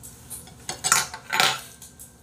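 A fork clinking and scraping against a dish: a few short strokes about a second in, the loudest two half a second apart.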